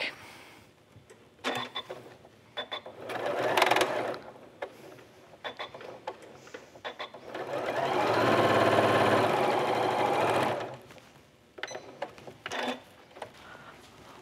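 Janome MemoryCraft 9400QCP computerised sewing machine stitching a stitch-and-flip seam. It gives a short run a few seconds in, then runs steadily for about three seconds in the second half, with light clicks and taps from handling the fabric between the runs.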